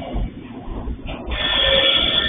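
Train cars rolling past over the rails with a low rumble, joined in the second half by a high-pitched wheel squeal.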